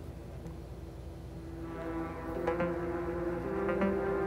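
Aparillo software synthesizer played from Drambo's on-screen pad keyboard. Sustained synth notes come in about a second and a half in, and new notes join around two and a half seconds and again near the end, overlapping the ones still ringing.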